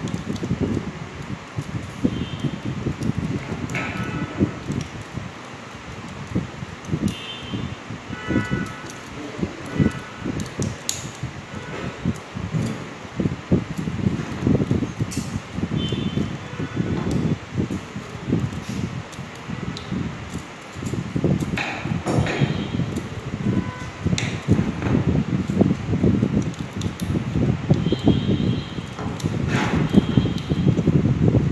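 Enamelled copper winding wire being handled and pressed into the slots of a pump motor's stator: irregular rustling and scraping of wire on the slot insulation, with small clicks and knocks.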